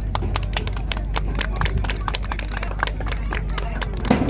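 Audience applause: many individual hand claps in quick, irregular succession.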